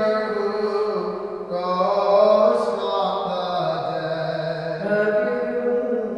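A solo voice chanting Byzantine liturgical chant in long held notes that step slowly up and down in pitch.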